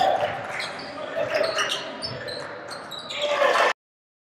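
Live game sound from a basketball gym: the ball bouncing on the hardwood court amid voices of players and spectators. It cuts off suddenly near the end.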